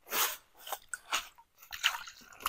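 A few short crackles and crunches from dry twigs and needle litter being handled and knelt on. Near the end, water starts splashing over hands onto the ground.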